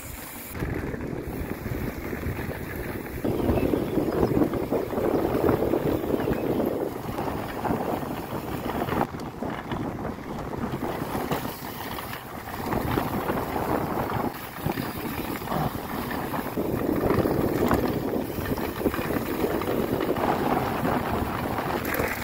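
Wind buffeting the microphone of a bike-mounted camera, mixed with the rumble of mountain-bike tyres rolling over a dirt road, swelling and easing several times.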